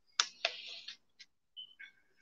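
A few short, light clicks and taps, with a brief thin squeak near the end.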